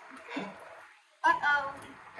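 A short laugh, then a brief spoken exclamation; voices are the main sound.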